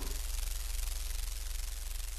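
Sound effect of a sparking electric tool: a steady crackling hiss over a low electrical hum.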